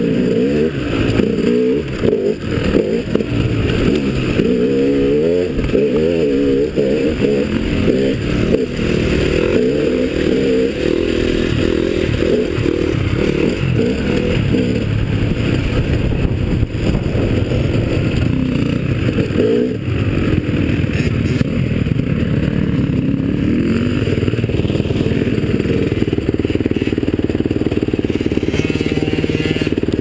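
Off-road dirt bike engine heard close up from the bike being ridden, its revs rising and falling over and over as it is worked over a rough track, with rattling from the machine over the bumps. The revving swings are strongest in the first half and the engine runs steadier later on.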